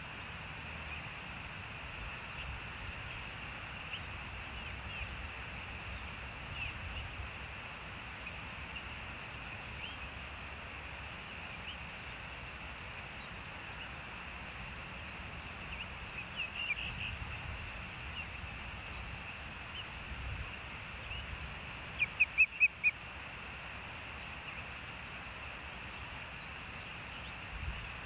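Osprey calling: a run of four short, loud, high whistled chirps about two-thirds of the way in, with fainter scattered chirps before it, over a steady outdoor hiss.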